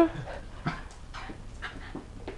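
A dog panting: a few short, breathy huffs.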